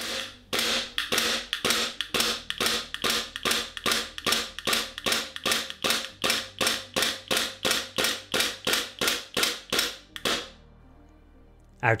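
WE G17 gas blowback airsoft pistol firing a steady string of shots, about three a second, the slide cycling with each shot. The shooting stops about ten seconds in.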